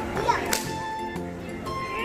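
A single sharp crack about half a second in as a child and her rolling suitcase tumble onto a tiled floor, over background music.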